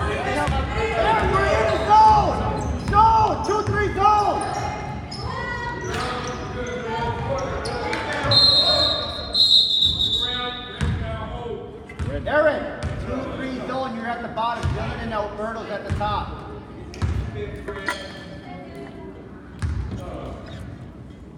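A basketball bouncing on a hardwood gym floor, with voices echoing in the large gym. Around eight to ten seconds in, a referee's whistle blows in two shrill blasts, stopping play.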